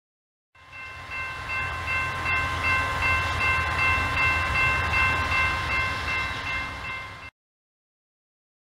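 A train sound: a steady chord of high tones over a low rumble. It starts about half a second in and cuts off suddenly near the end.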